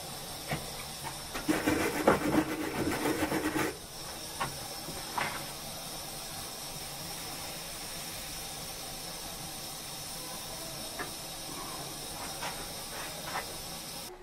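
Hot soldering iron sizzling on flux and solder on a metal part, with a loud crackling burst from about one and a half to three and a half seconds in, over a steady hiss. A few light ticks follow.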